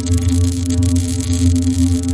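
Electronic sound-effect sting: a steady low drone with a crackling hiss above it.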